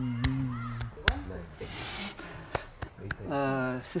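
A man's low, steady hum, sinking slightly in pitch, that stops about a second in. Then come a few sharp taps, a short hiss near the middle and a brief voiced sound near the end.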